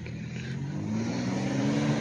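A motor vehicle's engine hum with road noise, growing steadily louder, its pitch rising slightly near the end.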